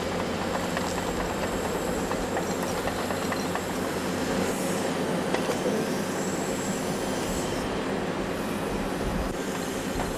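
Diesel engine and hydraulics of an Åkerman excavator running steadily under load as it works an orange-peel grab, with a few faint clanks.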